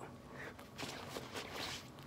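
Faint rustling with a few soft knocks from a person moving close to a phone's microphone.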